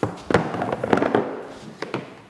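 Hollow plastic organ pieces from an anatomical torso model clattering and knocking as they are handled and put down: a quick run of sharp knocks in the first second or so, and one more near the end.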